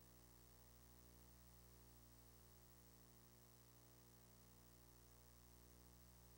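Near silence: only a faint, steady electrical mains hum on the audio feed.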